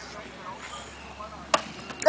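A single sharp crack about one and a half seconds in as a pitched baseball reaches home plate, over faint chatter.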